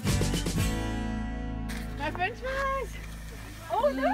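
Background music ending on a chord that rings and fades out within the first two seconds, followed by people talking.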